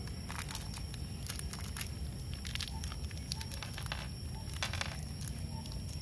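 Scattered light clicks and scrapes as gloved hands handle a steel concealed cabinet hinge and small screws on a plywood door, setting the hinge into its drilled cup hole.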